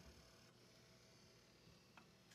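Near silence: faint room tone, with one small click near the end.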